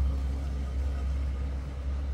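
A steady low rumble with no clear events in it.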